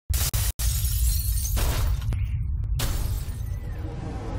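Produced intro sound effects: a few loud noisy crashes over a deep bass rumble, cutting out twice in the first half-second, with the last crash dying away near the end.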